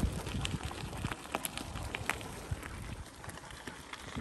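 Irregular crunching and clicking of loose gravel under a moving electric bike's tyres and the paws of malamutes running on the gravel track, growing quieter toward the end.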